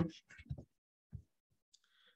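A pause in speech that is mostly quiet: the tail of a spoken word, then two faint, brief clicks about half a second and a second in.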